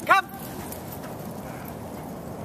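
An Old English Sheepdog gives a single short, loud bark just after the start, rising then falling in pitch, over steady background noise.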